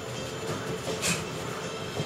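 Sparring in a gym: bare feet moving on a padded mat over steady room noise, with one short sharp hiss, like a punch's exhale, about a second in.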